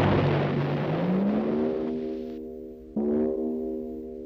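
The rumbling tail of a cartoon cannon blast fades away over the first two seconds, while a low musical slide rises under it. Held orchestral chords follow, and a new chord comes in about three seconds in.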